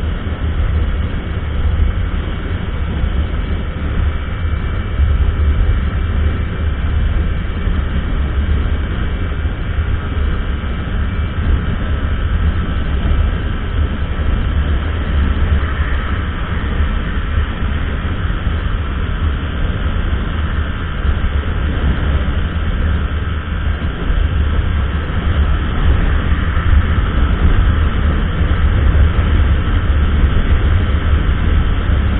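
Wind rushing over the microphone of a Honda Biz 100 at full throttle, with its small single-cylinder four-stroke engine droning steadily at top speed. It is geared taller with a 15-tooth front sprocket and carries a passenger.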